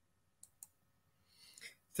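Near silence broken by two faint, short clicks about half a second in, then a faint rustle just before a man starts speaking at the very end.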